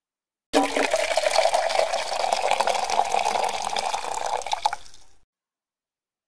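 Liquid pouring steadily, used as a segment-break sound effect. It starts suddenly about half a second in and fades out after about four and a half seconds.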